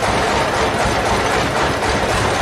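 Band sawmill machinery running steadily, its engine going at an even idle without load.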